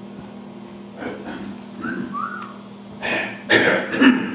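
Steady low electrical hum from the room's sound system, with two short whistle-like notes about two seconds in. Near the end come loud, rough bursts of coughing or throat-clearing.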